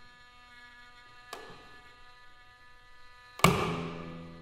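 Slow Korean traditional court ensemble of haegeum, plucked zither and janggu. Faint drawn tones hang between sparse strokes: a light stroke about a second in, then a loud struck accent near the end that rings away with low plucked-string tones.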